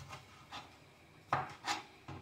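Kitchen knife slicing tomatoes on a plastic cutting board: about four short cuts, each ending in a knock of the blade on the board, the two loudest in the second half.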